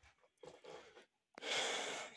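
A person breathing faintly, then a louder, sharp intake of breath near the end.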